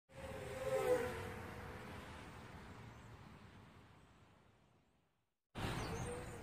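Small quadcopter motors buzzing, dipping in pitch about a second in, then fading away over several seconds. A second buzzing pass starts near the end.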